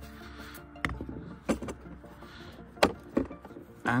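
Quiet background music under about four sharp clicks and knocks from handling a cordless hammer drill's plastic side handle and metal depth rod. The loudest knock comes about three-quarters of the way through.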